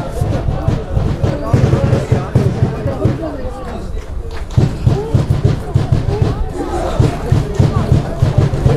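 Football supporters chanting and shouting from the stands, many voices at once, with low thuds running under them.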